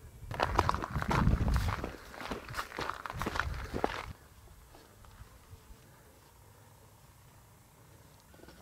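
Footsteps crunching on a gravelly, rocky hiking trail, a quick run of steps that stops about four seconds in.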